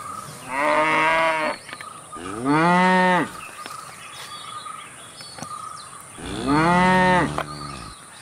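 Cattle mooing: three moos of about a second each, the pitch rising and then falling in each, the last coming after a pause of about three seconds.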